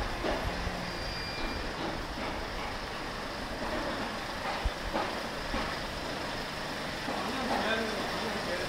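Street ambience: a small truck's engine running close by, with scattered voices of passers-by.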